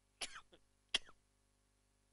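A man clearing his throat with two short coughs, about three-quarters of a second apart.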